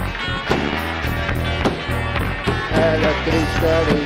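Rock band playing live: drums keeping a steady beat under bass and electric guitar.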